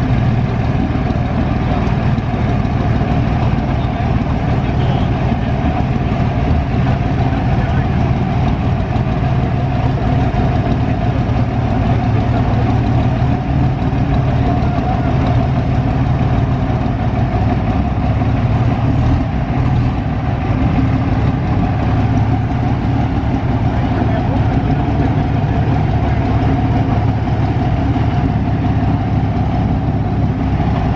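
Big exposed engine of a vintage racing car running at a loud, steady idle, with an even low note that holds unchanged throughout.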